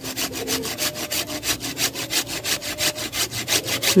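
A fast, even rhythm of rasping strokes, high-pitched and steady, with a faint thin tone now and then.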